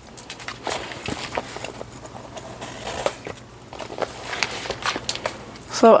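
Scattered light clicks, taps and rustles of objects being handled on a tabletop, with a few sharper knocks.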